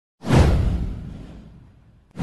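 A single whoosh sound effect with a deep low boom under it, sweeping in sharply about a quarter-second in, then fading away over about a second and a half.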